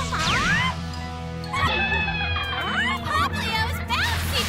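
Cartoon background music with Popplio's high, yelping cries sliding up and down in pitch.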